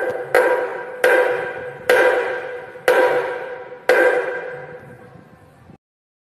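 Music sting: a ringing, bell-like pitched chord struck about once a second, each strike fading out slowly, the last one fading longest before it cuts off near the end.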